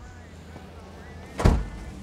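A single sharp thump about one and a half seconds in, heavy in the low end, over a steady low background rumble.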